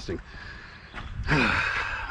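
A man's long voiced sigh, starting a little past halfway, with the pitch falling, after a first second of quieter breathing and movement.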